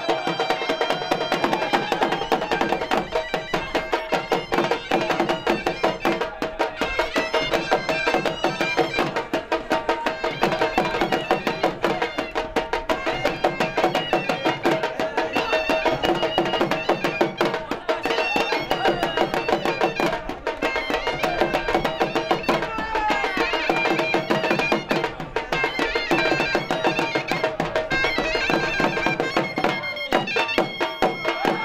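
Pashto folk music for a Khattak dance: a surnai (shawm) plays a sustained, reedy melody over quick, steady strokes on two dhol drums.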